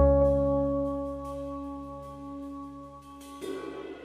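Instrumental band music: a chord on keyboard with deep bass, struck at the start, slowly dies away. Soft brushed cymbal comes in near the end.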